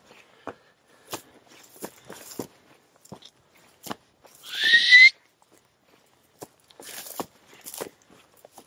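Footsteps crunching on dry grass and stony ground, irregular and scattered, with a denser patch near the end. About four and a half seconds in, a short high whistle rising in pitch is the loudest sound.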